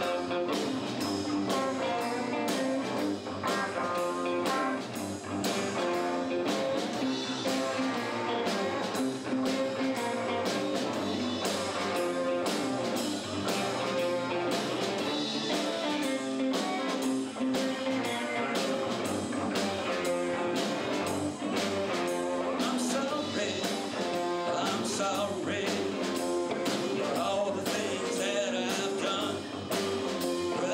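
Live blues-rock band playing electric guitars over a drum kit with a steady beat.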